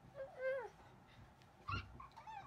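A toddler's short, high-pitched squealing call that rises and then falls, followed by a brief thump near the end.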